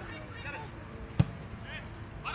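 A single sharp thud of a football being kicked, a little past a second in, with faint distant shouts from players on the pitch.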